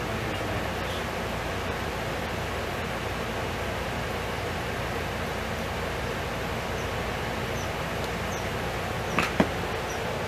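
Steady background hiss with no speech. About nine seconds in come two sharp knocks close together, from the camera being handled.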